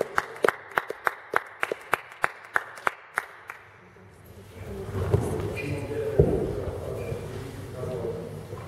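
A few people clapping in a steady rhythm, about three claps a second, in a sports hall; the clapping stops about three and a half seconds in. Indistinct low-pitched shuffling and handling sounds follow, with a single thud a little after six seconds.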